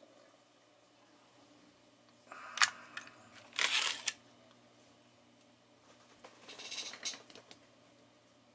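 Handling of a switching power supply and its sheet-metal cover being picked up and laid on the bench: three short bouts of scraping and clatter, the first with a sharp click about two and a half seconds in.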